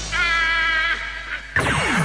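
The end of a hip-hop track on a 1990s FM radio broadcast: a held, slightly wavering high note that fades. About a second and a half in it is cut off by a falling swoosh that leads into a station promo.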